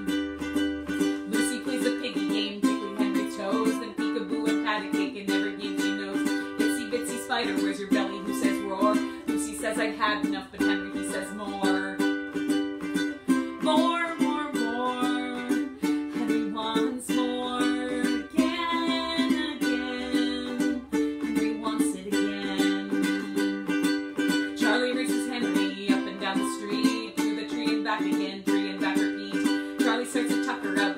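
A children's picture-book song performed live: a woman singing to a steadily strummed stringed instrument.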